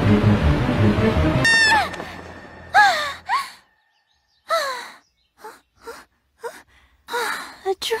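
Background music stops about one and a half seconds in. It is followed by a girl's voice making short, separate gasps and startled exclamations with falling pitch.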